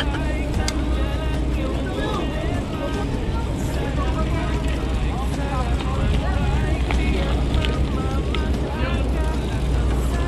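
Steady low rumble of wind and road noise from riding a bicycle, with indistinct voices of other riders chattering throughout.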